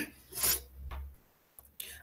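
A pause in a man's speech, filled by a low rumbling rub on the microphone.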